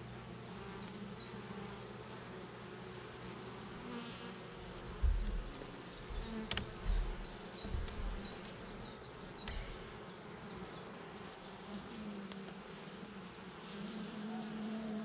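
Honey bees buzzing steadily around an open hive during a frame inspection. Midway come a few low thuds and sharp clicks as the hive tool and wooden frames are handled.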